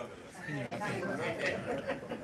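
Indistinct talk from several voices at once, low and overlapping, with no clear words.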